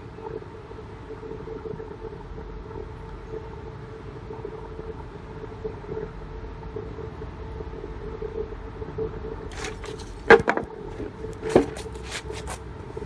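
Two sharp knocks a little over a second apart near the end, from a solid HDPE plastic mallet striking a wooden pallet, over a steady low hum and rumble.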